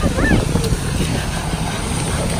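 Street traffic on a rain-wet road, a steady low rumble, with a brief vocal sound a fraction of a second in.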